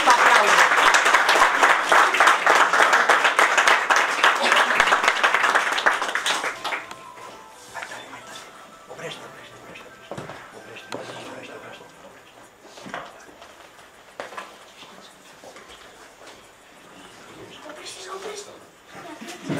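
Audience applauding for about six seconds, then dying away. The room goes quiet, with faint held tones and a few small knocks.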